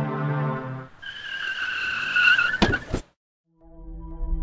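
Background music stops about a second in, then car tyres screech for about a second and a half, ending in a few sharp impact knocks like a car striking something. A brief silence follows, and music comes back near the end.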